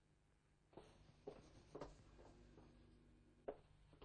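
Near silence in a small room, broken by four faint, sharp knocks at uneven intervals, like a person's footsteps and a door being handled.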